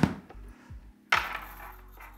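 A sharp click, then a faint low mains hum from a loudspeaker driven by an EL34 push-pull valve amplifier, picked up through the signal pin of an RCA lead being handled. About a second in comes a short burst of rustling handling noise.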